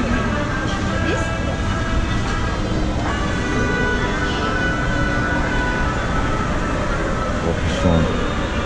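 Steady shopping-mall background noise: a low hum with indistinct voices murmuring throughout.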